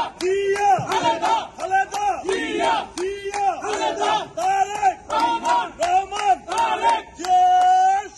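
A group of men chanting political slogans in unison, short shouted phrases in a quick even rhythm of about two a second, ending on one long held shout near the end.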